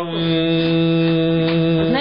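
A single steady droning tone at one unchanging pitch, rich in overtones, that cuts in and out abruptly.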